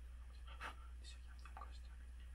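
A man whispering a prayer close into a phone held at his lips: soft, broken breathy murmurs, the strongest about a third of the way in, over a steady low hum.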